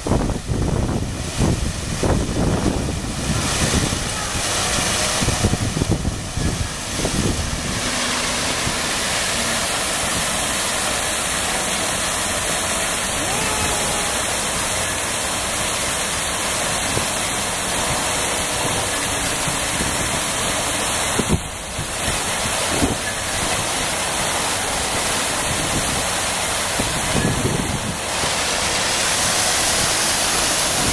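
Man-made waterfall cascading over stacked rocks: a steady, loud rush of falling water. Wind buffets the microphone unevenly during the first several seconds.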